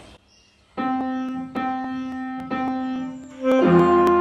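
Piano accompaniment starting after a brief pause: one note repeated about once a second, each fading slowly, then fuller and louder chords with a bass line coming in near the end.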